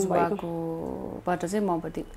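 A woman speaking, with one syllable drawn out at a steady pitch for most of a second in the middle.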